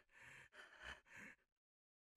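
Near silence: a person's faint breaths, about three short ones, then the sound cuts out completely about halfway through.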